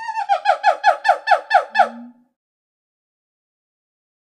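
Monkey screeching: a held high call breaks into a quick run of about ten sharp screeches, each falling in pitch, about five a second, ending with a short low note about two seconds in.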